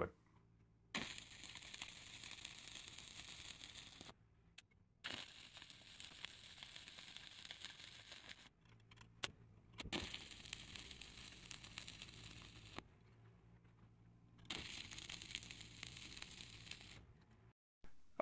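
Stick-welding arc crackling as fillet welds are run with 6011 and 6013 rods, heard as four separate runs of a few seconds each with short silent gaps between.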